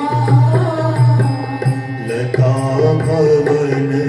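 Indian devotional music: a melody line over a steady low drone that sets in at the start, with light regular percussion ticks.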